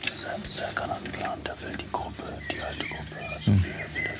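A hushed, whispered conversation between men, with one louder spoken syllable about three and a half seconds in.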